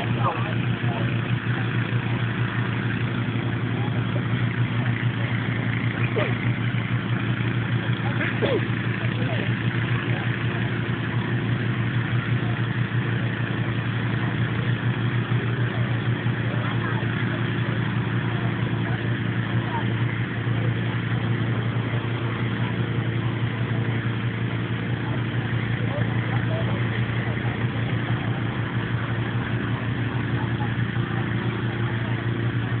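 Petrol-engined inflator fan running steadily, blowing air into a hot-air balloon envelope during cold inflation. It gives an even engine hum with a rush of air, with no change in pitch.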